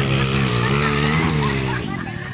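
A racing motorcycle's engine running hard as it passes along the dirt track, its note dipping and rising slightly, then fading near the end.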